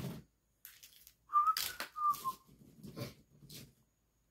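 A man whistling two short notes, the second dipping slightly in pitch, with brief rustling and handling noises as he reaches for the next action figure.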